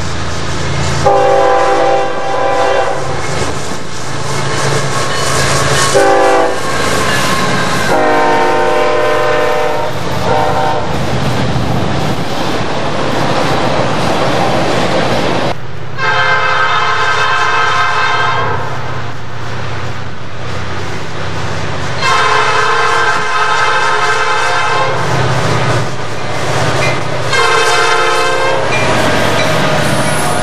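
Norfolk Southern diesel freight locomotive's multi-note air horn blowing a chord in a series of long and short blasts as the train approaches. After a pause it sounds long, long, short, then starts another long blast right at the end. Beneath it runs the steady low rumble of the locomotives' diesel engines, with wheel clatter on the rails as the engines arrive.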